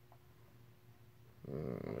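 Near silence, then about one and a half seconds in a man's low drawn-out hum, a hesitation sound before speaking.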